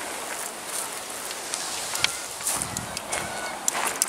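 Footsteps crunching through dry grass and dirt, irregular short crunches about twice a second, with camera handling noise over a steady outdoor hiss.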